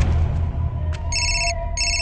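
Telephone ringing tone, two short electronic trills a little over a second in, as a call rings through to the other end, over a low steady music drone.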